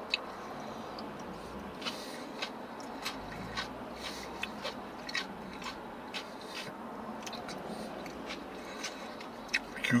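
A man chewing a mouthful of carrot slaw inside a car, with many small scattered mouth clicks over a steady background hum.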